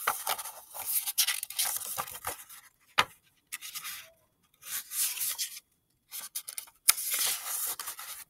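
Paper rustling and rubbing as the pages of a hardcover picture book are handled and a page is turned, in several short spells with pauses between them. A single sharp click about three seconds in.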